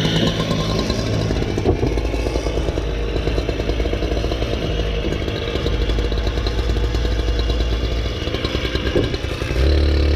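An engine runs steadily throughout, with a couple of short knocks. Near the end it steps up to a louder, deeper note.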